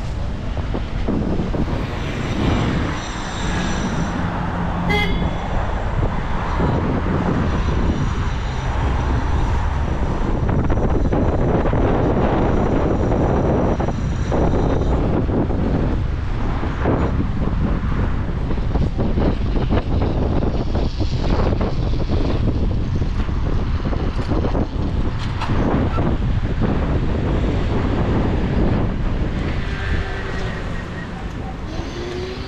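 Riding an electric scooter at speed: steady wind rush on the microphone mixed with the rumble of the tyres on the path. A faint high whine comes and goes, and there is one sharp click about five seconds in.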